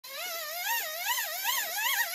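Electronic warbling tone whose pitch wavers up and down about two to three times a second, typical of a light-up toy's sound effect.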